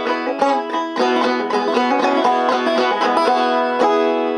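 Long-neck five-string banjo being picked, a quick continuous run of plucked notes over fretted chords.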